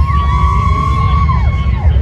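Spectators whooping: a few long, high 'woo' calls overlapping, rising at the start and falling away near the end, over a steady low rumble.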